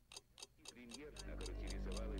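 Clock-like ticking, about four ticks a second, joined about a second in by a low drone that swells steadily louder, with wavering tones over it.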